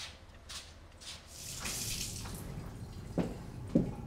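Footsteps on pavement, about two a second, then a brief rush of noise and a low rumble, with two knocks near the end.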